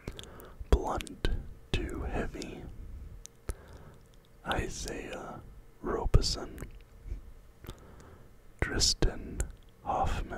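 A man whispering close to the microphone in short phrases with pauses between them, with sharp little clicks between phrases.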